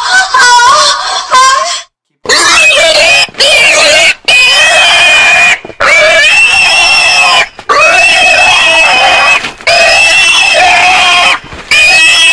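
A pig squealing loudly, in a run of long squeals of one to two seconds each with short breaks between them, starting about two seconds in.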